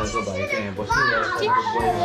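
Children's voices: excited, high-pitched calls that rise and fall in pitch, with music playing underneath.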